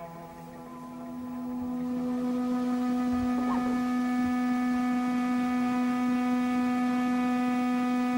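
A single sustained droning note with a stack of overtones, swelling over the first two seconds and then holding steady, with no rhythm or other instruments yet.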